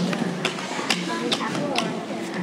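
A steady series of sharp taps, about two a second, over a low murmur of voices in a large room.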